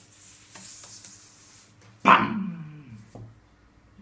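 A hissing noise, then about halfway in a sudden loud vocal cry that falls steadily in pitch over about a second: a mock gunshot-and-dying sound between the person and the parrot.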